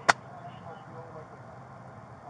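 A single sharp click just after the start, over the steady low hum of an idling car heard from inside the cabin, with faint voices in the background.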